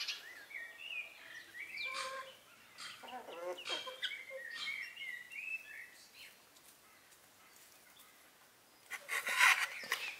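Hens clucking and birds chirping in short calls that rise and fall through the first six seconds, then a lull. Near the end, split wooden kindling clatters as it is handled.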